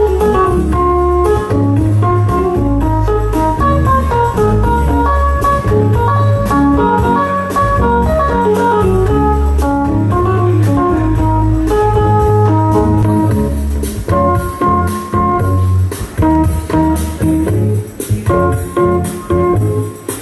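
Live jazz trio music: a Korg Pa-series arranger keyboard plays a lead line of quick short notes over a steady low bass line from a Kala U-Bass.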